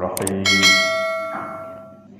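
A quick double click, then a bright bell ding that rings out and fades over about a second and a half: the sound effect of a YouTube subscribe-button and notification-bell overlay.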